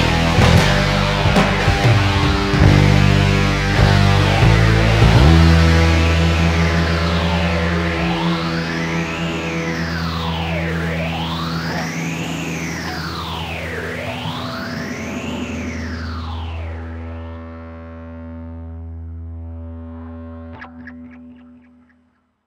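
The ending of a distorted stoner-rock track: fuzzed electric guitar and drums for the first few seconds, then a held chord swept up and down by an effect in slow arcs about every three seconds. It fades out and stops just before the end.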